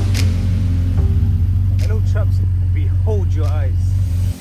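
Ferrari 488 Pista's twin-turbo V8 idling steadily with a deep, even drone, under music and a voice.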